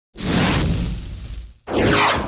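Two whoosh sound effects of an animated intro: a long swell that fades out over about a second and a half, then a second, sweeping whoosh building up just before the end.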